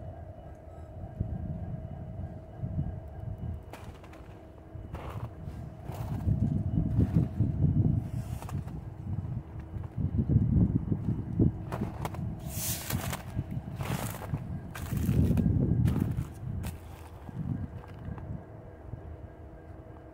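Footsteps crunching through snow, a dozen or so irregular crunches, over low rumbling swells on the microphone and a faint steady hum.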